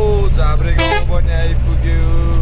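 Steady low engine and road rumble from inside a moving vehicle's cab, with a voice singing long held notes over it. About a second in there is a short, brighter burst of tones.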